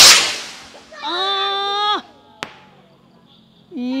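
A firework rocket launching with a sudden sharp whoosh that fades over about a second. A person's long held shout follows, then a short crack about two and a half seconds in.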